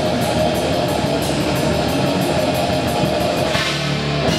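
Death metal band playing live: distorted electric guitar riffing over a drum kit with steady cymbal hits. The riff changes near the end.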